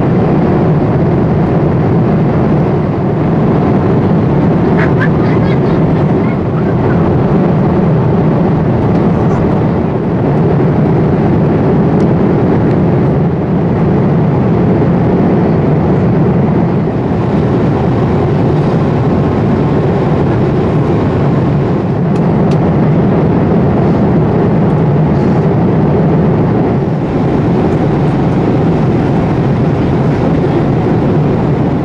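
Steady cabin noise inside a Boeing 787-8 airliner at cruise altitude: a loud, even rush of airflow and jet engines with a deep low hum, holding level throughout.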